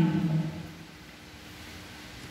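The tail of a drawn-out 'Amen' in a man's voice, falling in pitch and ending about half a second in. It is followed by quiet room tone with a faint steady hum.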